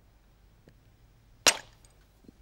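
A flint core being knapped with hand tools: one sharp crack of stone on flint about one and a half seconds in.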